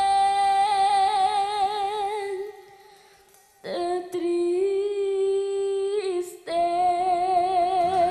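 A young girl singing long held notes with vibrato into a microphone. She breaks off for a pause of about a second near the middle, then comes back in, with another brief break about two seconds later.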